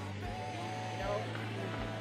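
Soft voices of people talking at a distance from the microphone, over a steady low hum.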